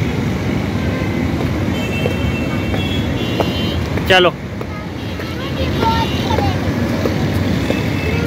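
Steady low rumble of road traffic around an outdoor city park at night, with a single short spoken call about four seconds in.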